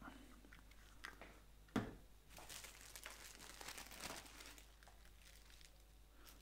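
A single sharp knock a little under two seconds in, then a thin plastic sheet crinkling as it is spread and pressed by hand over wet acrylic paint on paper.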